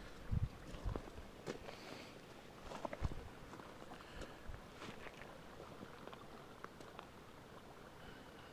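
A handful of dull thumps and footsteps on grassy ground, clustered in the first three seconds, then only a few faint clicks.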